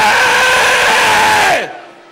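A man's long, held shout into a microphone, steady in pitch, dropping away about a second and a half in, over the cries of a worked-up congregation.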